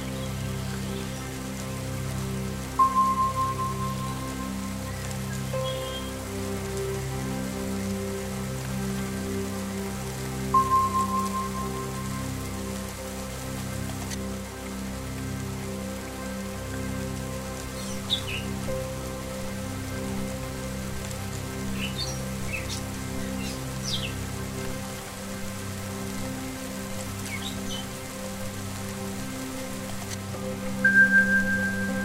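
Ambient meditation music: a steady sustained drone blended with the hiss of falling rain. Two chime-like strikes ring out about 3 and 11 seconds in, and short bird chirps come through in the second half.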